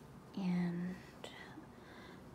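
A woman's voice, speaking softly: a single held syllable about half a second long, followed by a faint click.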